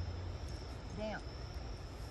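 Steady high chirring of crickets over a low rumble, with a quiet voice saying 'Down' about a second in.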